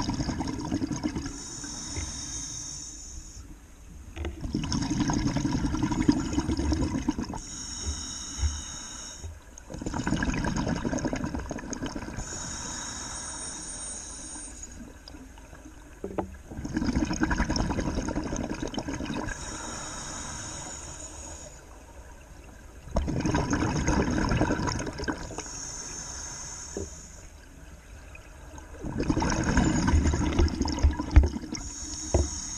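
Scuba regulator breathing underwater: a loud bubbling exhalation about every six seconds, each followed by a quieter, higher hiss of inhalation.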